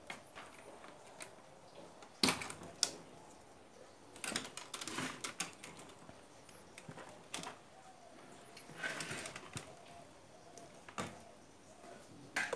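Irregular clicks, knocks and rustles of a circuit board and metal chassis being handled as the main board of an opened Sony hi-fi unit is swung up and tilted aside. The two sharpest knocks come a little over two seconds in.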